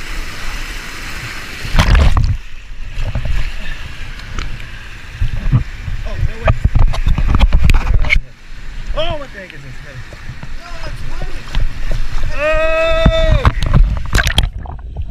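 Water splashing and sloshing around a person wading and swimming through a shallow canal, with water running over a low weir, and heavy rumbling surges where the water hits the camera's microphone.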